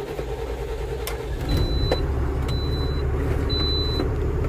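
Tata truck's diesel engine idling just after starting, with a steady low rumble. From about a second and a half in, a dashboard warning beeper sounds about once a second, half a second at a time. This is typical of the low-air-pressure warning while brake air builds after a cold start.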